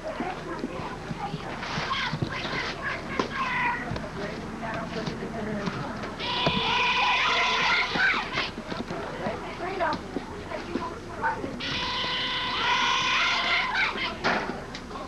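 Young softball players and spectators calling out and chattering, with two long, high-pitched group cheers, one about six seconds in and one near the end.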